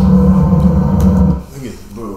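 Low, steady ominous drone from a horror film's soundtrack, cutting off suddenly about a second and a half in.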